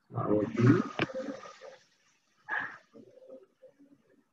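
A man's voice making drawn-out, indistinct speech sounds, with a sharp click about a second in and a shorter voiced sound about two and a half seconds in.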